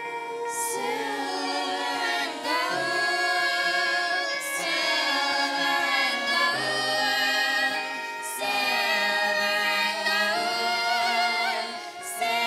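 A vocal ensemble of mixed voices singing in harmony, in phrases with short breaks about two and a half and eight seconds in.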